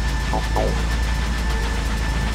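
Techno music over club speakers: a steady, deep sub-bass drone with a thin high held tone and short sliding synth sounds over it.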